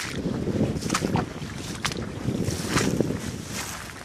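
Wind buffeting the microphone as a steady low rumble, with a few brief swishes of dry grass brushing past while someone walks through it.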